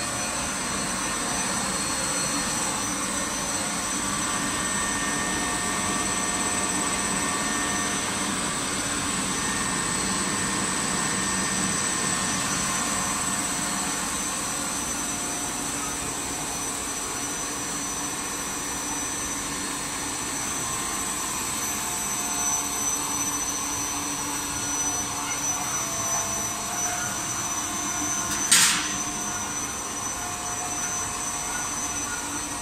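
Steady noise of a running WPC decking profile extrusion line: a constant hiss and hum carrying several steady high-pitched tones. A single sharp click sounds near the end.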